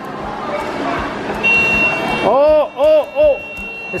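Subway fare gate alarm: a steady high beep starts about a second and a half in, then three rising-and-falling electronic tones, as the gate's flap barrier closes on someone who has not tapped a fare card.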